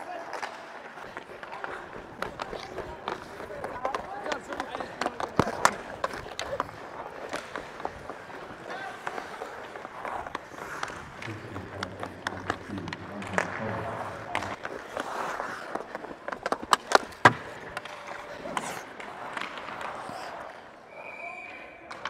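Ice hockey play on the ice: skates scraping, sharp clacks of sticks and puck that are loudest about seventeen seconds in, and indistinct players' shouts. A short whistle sounds near the end as play stops.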